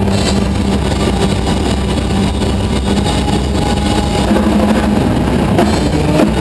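A live rock band holding a loud, steady, distorted drone from electric guitar and keyboard, with a long held note and a deep hum underneath and no clear drum beat.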